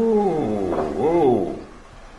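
A man's drawn-out wordless vocal exclamation, its pitch rising and falling twice over about a second and a half.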